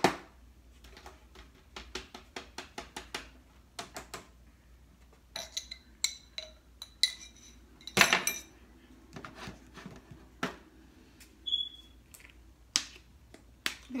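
A utensil clinking and tapping against a glass jar of minced garlic while it is spooned out over a foil pan: a quick run of light taps, then ringing glass clinks, and a louder knock about eight seconds in.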